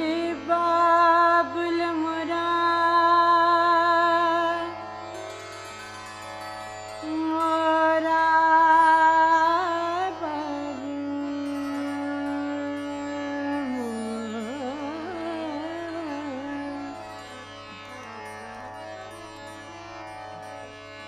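Female Hindustani classical khyal voice singing raga Bhairavi in long held notes that waver and slide between pitches, over a steady drone. The singing grows softer in the second half.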